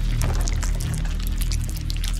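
Electronic dubstep track: a sustained deep bass under scattered short clicks and noisy high textures.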